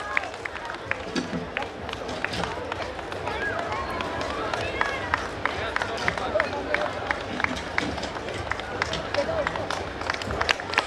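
Audience clapping in scattered, uneven claps, with crowd chatter underneath.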